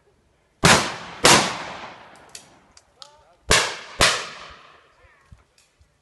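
Shotgun shots fired in two quick pairs, the two shots of each pair about half a second apart and the pairs about three seconds apart, each report trailing off in a long echo. A few fainter, sharper cracks come in between.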